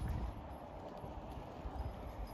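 Riding noise from a bicycle: an uneven low rumble and knocking from the tyres and frame over the pavement, with a faint hiss of air over the phone's microphone.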